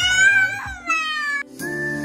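A high-pitched, drawn-out squeal from a woman's voice, rising a little and then falling, that cuts off about one and a half seconds in. Soft outro music with held notes and a whistle-like melody then begins.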